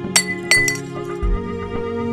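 A glass bottle falling over and clinking on the floor: two sharp, ringing clinks about a third of a second apart, then a lighter one. Soft background music plays throughout.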